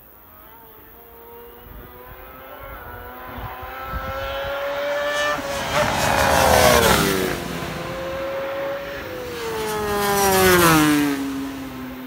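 Two racing superbikes pass at speed one after the other, the engine sound building as each approaches. The first is loudest about six seconds in and the second about ten seconds in, and the engine pitch falls as each goes by.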